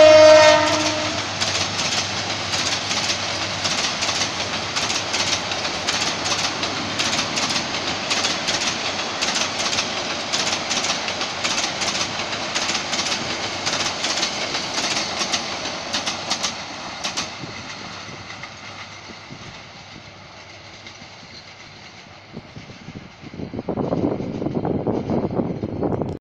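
Passenger train coaches running past, their wheels clicking steadily over the rail joints, with a short blast of the diesel locomotive's horn at the start. The clicking fades away over the last several seconds as the train moves off, and a burst of rumbling noise comes near the end.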